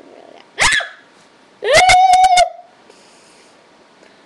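A girl screaming: a short falling shriek about half a second in, then a longer high-pitched scream that rises and holds for nearly a second, very loud.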